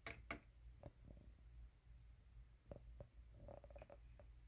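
Faint, light clicks and taps of a clear plastic cup being handled on a digital kitchen scale as a baby bearded dragon is set into it, with two sharper clicks at the start.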